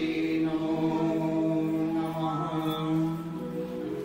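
Devotional chanting: voices singing long, held notes that slowly shift in pitch, easing off a little near the end.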